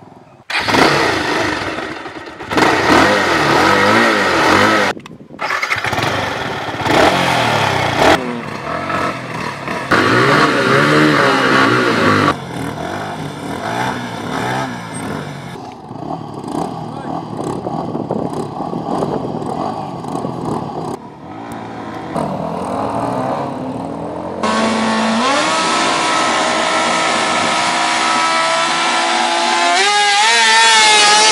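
Two single-cylinder sport motorcycles, a Yamaha R15 V3 and a Bajaj Pulsar 220, revving their engines in repeated rising and falling blips at a drag-race start, in several cut-together takes. From about 24 seconds a steadier engine note climbs slowly in pitch as a bike accelerates away.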